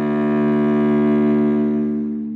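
Cello playing one long bowed note of a two-octave minor scale, swelling and then starting to fade near the end.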